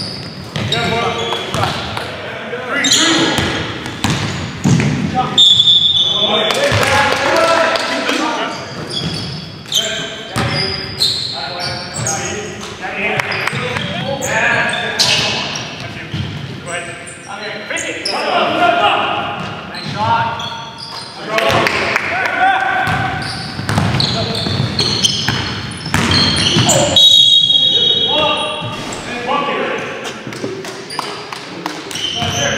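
Basketball game sounds echoing in a gym: the ball bouncing on the hardwood court, sneakers squeaking, and players' indistinct shouts and calls.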